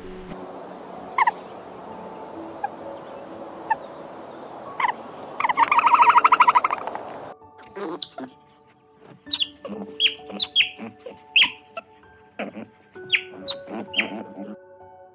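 Animal calls: a few short chirps, then a loud, rapid trilling call about five seconds in. After a sudden change, soft steady music carries sharp high squeaks that fall in pitch.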